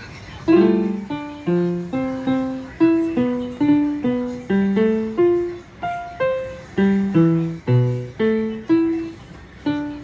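Electronic roll-up silicone piano played a note at a time in a slow, halting melody, about two to three notes a second, each note struck and dying away, now and then two keys together.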